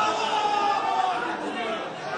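A large seated audience murmuring, many voices at once, easing off toward the end.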